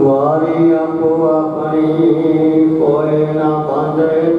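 A man's voice chanting Gurbani, Sikh scripture, in a slow sung recitation, holding long drawn-out notes that shift pitch now and then.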